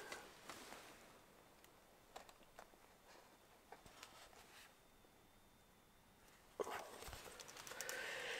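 Quiet handling of cardboard packaging as a Blu-ray collector's box and its cardboard disc holders are opened: a few faint clicks and rustles, a near-silent pause, then louder rustling and light scraping of cardboard near the end.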